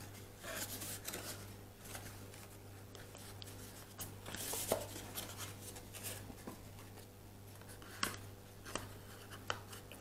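Thin card being folded and pinched together by hand into a box: faint, scattered rustling and small taps of card, loudest about halfway through.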